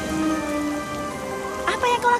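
Steady rain falling, with soft background music of held notes over it; a voice begins near the end.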